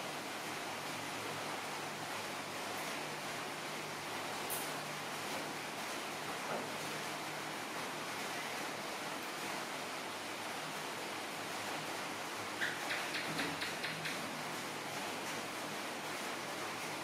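Steady background hiss, with a quick run of about eight short clicks a few seconds before the end and a single click earlier.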